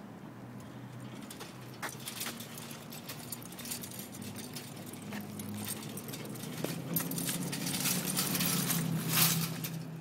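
Dog-pulled laundry wagon with an empty load rolling along a concrete sidewalk, its wheels and shaft hitch rattling and clinking, with the dog's harness fittings jingling. The rattling grows louder and busier in the second half.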